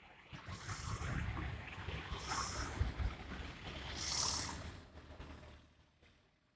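Wind buffeting the microphone in gusts, a rough low rumble that builds about half a second in and dies away near the end, with three brief bursts of higher hiss.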